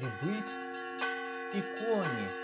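Church bells ringing, a new stroke about once a second with each note ringing on over the last.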